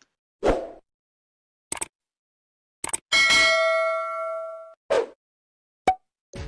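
Sound effects of an on-screen like-and-subscribe animation: a few short, sharp hits, and about three seconds in a bell-like notification ding that rings on for about a second and a half.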